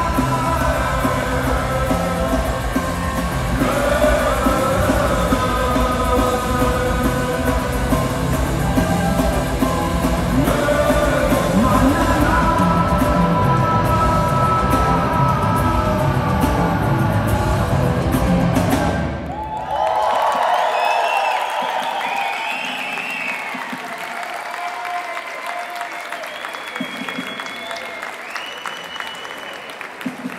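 Rock band playing live, with a singer over drums, bass, electric guitars and keyboard, ending its song abruptly about two-thirds of the way through. The audience then cheers and applauds, fading slowly.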